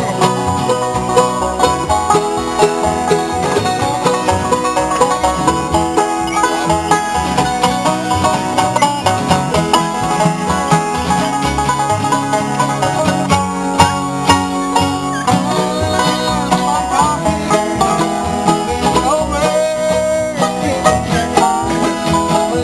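Acoustic bluegrass jam: banjo rolls, mandolin, flat-top guitar, resonator guitar played with a slide bar, and upright bass, playing a tune together without a break.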